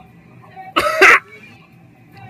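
A man's short, loud vocal burst close to the microphone, in two quick pulses, like a cough or a burst of laughter.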